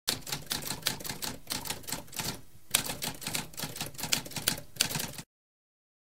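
Typewriter keys being typed in a rapid, uneven run of clicks, with a short lull about halfway through. It stops abruptly a little after five seconds.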